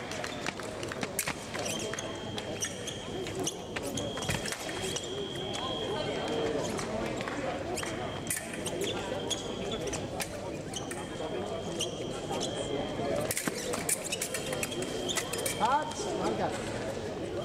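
Fencers' footwork on the piste during a foil bout: quick stamps, thumps and sharp clicks over steady chatter in a large hall. A high steady tone sounds on and off every second or two.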